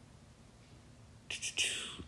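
Near silence, then near the end two small mouth clicks and a short, breathy in-breath just before speaking.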